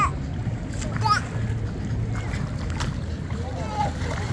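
Water splashing as a small child wades through shallow pool water, with short high-pitched cries about a second in and again near the end, over a steady low rumble.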